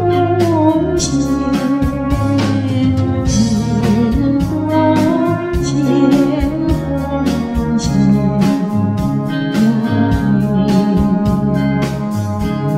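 A pop song with a steady drum beat, bass and guitar. A wavering sung melody runs over it through about the first half, and the rest is instrumental.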